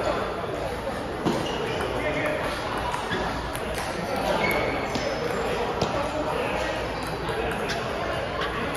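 Table tennis ball clicking off paddles and the table in an irregular rally, a few sharp clicks a second or more apart, in a reverberant hall with voices murmuring in the background.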